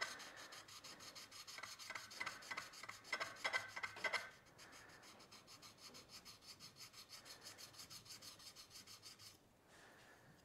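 Steel back of a 25 mm Ashley Iles bevel-edge chisel rubbed back and forth on abrasive sheet stuck to a glass plate, wetted with honing fluid. This is flattening the slightly hollow-ground back. The strokes scrape louder for about four seconds, then go on quicker and fainter, and stop shortly before the end.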